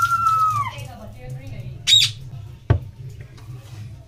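A person's long, high-pitched shriek, held and then trailing off in the first second. A short shrill squeal follows about two seconds in, then a single sharp knock.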